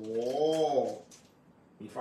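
A man's drawn-out exclamation of admiration, "โอ้โห" ("wow"), held for about a second with its pitch rising and falling. Speech starts again near the end.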